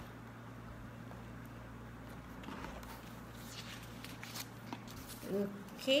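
Faint rustling and handling of cardboard and plastic packaging as a boxed microphone is unpacked, over a steady low hum.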